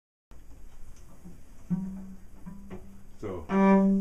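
Cello bowed at one low pitch. Two short notes, then a few lower notes stepping down, then a louder sustained note near the end.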